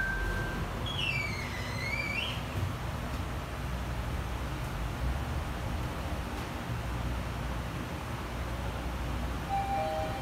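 Mitsubishi traction elevator car travelling between floors: a steady low rumble of the ride. A short beep sounds at the start, a high tone dips and rises again about a second in, and two steady tones sound together near the end as the car reaches the fourth floor.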